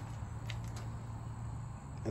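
Quiet background with a faint steady low hum and a faint tick about half a second in.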